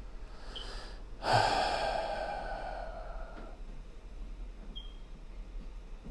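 A person sighing into the microphone: a faint breath in, then a loud long breath out about a second in that fades away over about two seconds.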